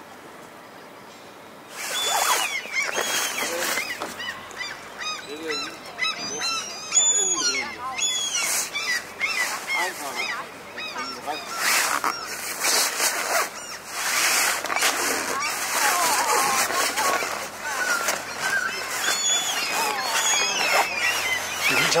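A loud chorus of birds calling, many short calls overlapping without pause, starting suddenly about two seconds in after a near-quiet opening.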